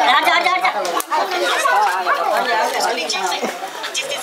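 Several people talking over one another in unscripted chatter, with one voice saying "badhiya" ("good") about two and a half seconds in.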